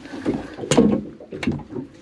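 Knocks and clatter of gear being handled on a small fishing boat's deck, with two sharp knocks, about two-thirds of a second in and about a second and a half in, over soft rustling.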